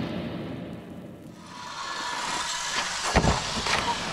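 Music fading out, then open-air water noise with a wakeskater wiping out: a sharp slap a little after three seconds in, then splashing water.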